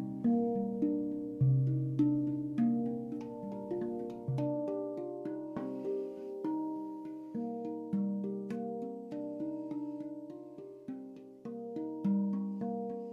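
Spacedrum handpan played in a slow melody of single struck notes, each ringing on and fading away. A deep bass note sounds twice in the first few seconds; after that only higher notes are struck.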